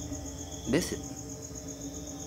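Crickets chirping in a steady, fast-pulsing high trill, with a low hum beneath. A man's voice makes one short murmur just under a second in.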